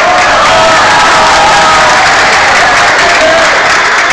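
A large audience applauding and cheering loudly, with many voices shouting over the clapping.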